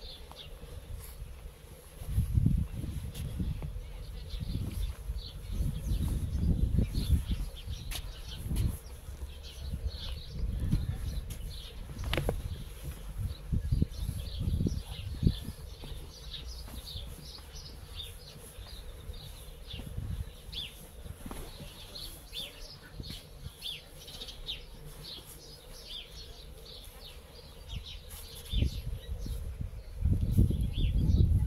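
Wind buffeting the microphone in irregular low gusts, heaviest in the first half and returning near the end, while small birds chirp steadily in the background.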